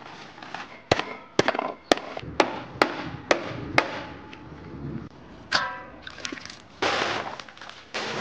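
A run of seven sharp knocks, about two a second, then a rustling rush as a sack of freshly dug purslane is tipped out onto a pile near the end.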